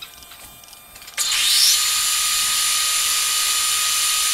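Metal-turning lathe switched on about a second in: the spindle and large three-jaw chuck spin up with a rising whine, then run steadily with an even, high whine over a loud mechanical hiss.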